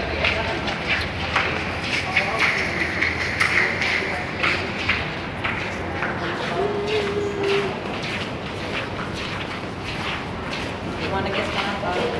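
Footsteps on a hard walkway floor, about two steps a second, with people's voices in the background.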